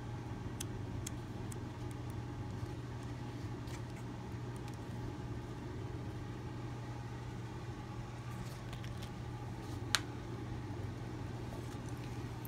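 Steady low background hum with a few faint clicks, and one sharper click about ten seconds in.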